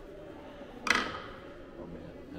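A single sharp click as a small cargo block is set down on a cut-away model keelboat, with low room noise around it.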